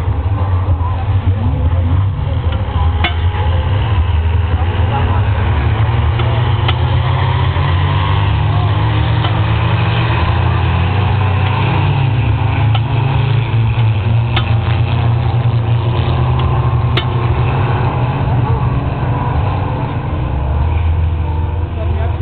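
Engines of several race cars lapping a grass track at a distance, their pitch rising and falling as they accelerate and brake, over a continuous deep rumble.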